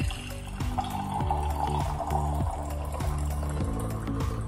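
Water pouring in a stream from a stainless-steel electric kettle, starting just under a second in and stopping about three seconds in, over background music with a steady beat.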